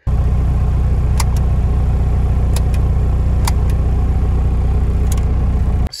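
Volkswagen Rabbit pickup's engine idling steadily, heard from inside the cab, with several light clicks over it. It starts and cuts off abruptly.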